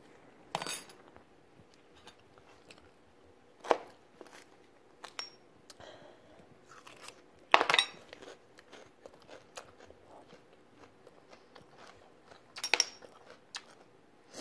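Eating sounds: a fork tapping and scraping on a plastic divided food tray, mixed with short crunches of food. There are about four louder clicks spread through, with fainter ticks between them.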